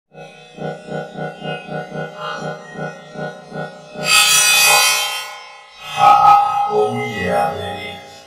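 Music: a pitched, pulsing pattern of about three beats a second, cut across about four seconds in by a loud noisy crash lasting over a second, then another loud hit about six seconds in as the music goes on.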